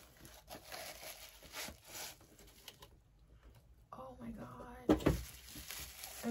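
Plastic bubble wrap crinkling and a small cardboard box rustling as a wrapped ceramic mug is handled and lifted out, with a louder sharp sound about five seconds in.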